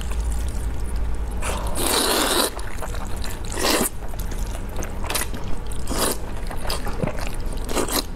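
Close-miked slurping and chewing of wide mianpi wheat-flour noodles: one long slurp about two seconds in, then several shorter slurps and mouthfuls.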